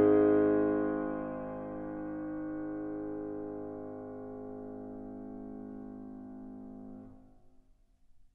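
Piano chord left ringing: many notes sounding together and slowly fading, then cut off sharply about seven seconds in as the sound is damped.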